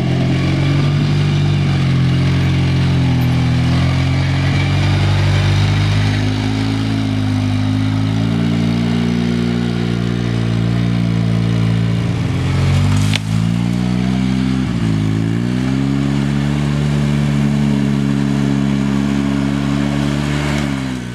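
ATV engine running at steady throttle, its pitch holding level, then dropping and climbing back up about two-thirds of the way in as the throttle is eased and reopened. A single sharp knock comes just before the dip.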